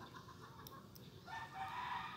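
Quiet room tone, then about two-thirds of the way in a faint drawn-out call begins: a rooster crowing in the distance.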